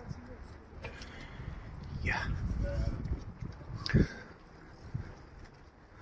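Outdoor street ambience while walking: a low rumble swells for a second or so about two seconds in, with a few short knocks, the loudest about four seconds in, and faint voices of passers-by.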